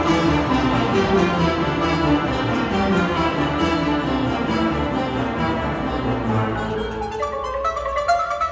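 Marimba struck with mallets by several players, ringing over a full orchestra accompaniment. About seven seconds in, the orchestra drops back and the marimba is left playing climbing runs of notes almost alone.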